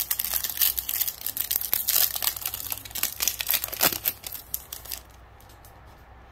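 A Bowman Chrome baseball card pack's wrapper being torn open at its crimped seal and crinkled, a dense run of sharp crackles that dies away about a second before the end.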